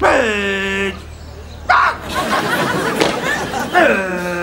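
A drill sergeant shouting a long drawn-out parade-ground command, its pitch dropping and then held for about a second. A sharp thump comes just before two seconds in, followed by softer scattered noise, and a second drawn-out shouted command starts near the end.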